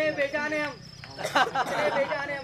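A man's voice through a public address system, drawn-out vocal syllables, a brief quieter gap about a second in, then a short sharp vocal burst and more voice, with a thin steady high-pitched tone underneath.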